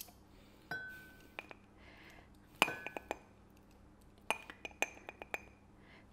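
A metal tablespoon clinking against the rim of a glass jar while flour is scooped out, with light clinks in small groups that ring briefly; the loudest comes about two and a half seconds in.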